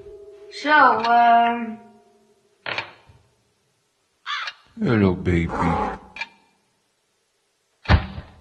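A person's wordless vocal sounds: a drawn-out call that drops in pitch and then holds, and a few seconds later a short run of vocalising. They are separated by a sharp click and abrupt dead silences, and a thud comes at the end. A low held tone fades out just as the sounds begin.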